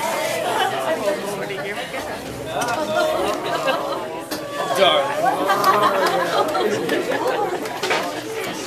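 Audience chatter: several people talking at once in a room, with no music playing.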